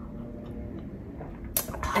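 Quiet sipping of tea from ceramic mugs, with faint small clicks, then a breathy sigh near the end.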